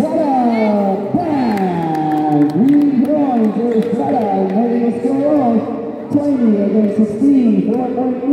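A man talking without pause, calling the basketball play. A few short knocks sound between about one and two seconds in.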